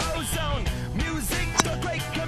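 Rock music with a singing voice over a steady low beat, with one sharp click about one and a half seconds in.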